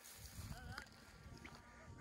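Near silence: faint low wind noise on the microphone, with a couple of brief faint gliding sounds near the middle.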